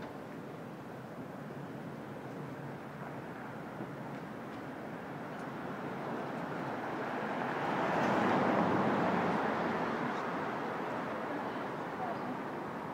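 City street traffic noise: a steady hiss of passing vehicles that swells as one vehicle goes by, loudest about eight seconds in, then fades.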